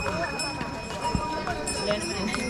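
A horse's hooves clip-clopping on the stony trail, with the bells on its harness ringing steadily, among a crowd of people talking.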